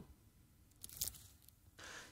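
Near silence: quiet room tone with two faint clicks just under a second in.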